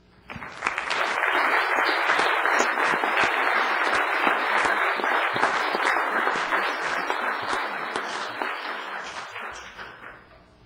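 Audience applauding, building quickly about half a second in, holding steady, then tapering off over the last couple of seconds.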